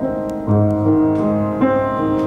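Piano playing slow, sustained chords, with a new chord struck about half a second in and another just past one and a half seconds.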